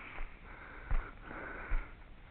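A person breathing close to the microphone, two breaths, with two soft thumps, one about a second in and one near the end.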